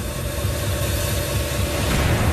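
A low, steady rumble with an even hiss over it from a documentary soundtrack bed, with no speech.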